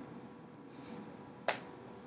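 A single short, sharp click about one and a half seconds in, from a stylus tip tapping a tablet screen while marking the worksheet, over faint room noise and a low steady hum.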